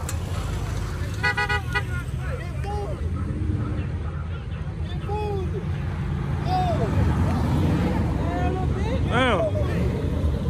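Car engines running in a steady low rumble that grows louder after about seven seconds, with a car horn tooting in a quick series of short blasts about a second in. People holler and shout over it, loudest near the end.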